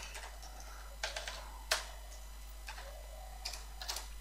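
A few scattered keystrokes on a computer keyboard, short clicks with the loudest about a second and a half in, over a faint steady hum.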